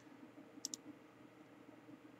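Near silence with faint room tone, broken by two quick, light clicks close together about two-thirds of a second in.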